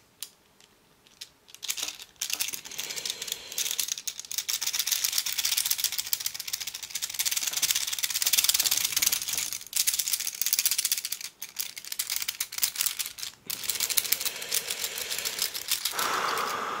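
Hanayama Cast Marble metal puzzle being twisted in the hands: dense, rapid clicking and rattling of the cast metal pieces against each other, starting about two seconds in, with a few brief pauses.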